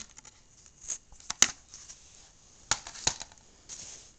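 Plastic Blu-ray case being handled: faint rustling with a few sharp clicks, the loudest about a second and a half in and two more near the end.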